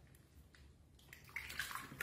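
Water splashing and sloshing in a small plastic basin as a hand washes a baby monkey; the splashing grows louder about halfway through.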